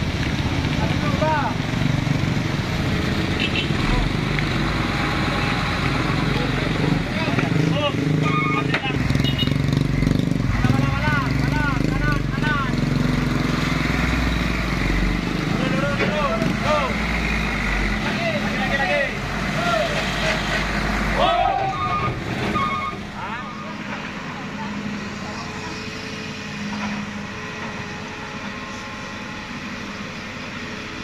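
Diesel truck engines running at low revs, with men's voices talking and calling out over them. The low engine rumble drops away after about twenty seconds, leaving quieter voices and background.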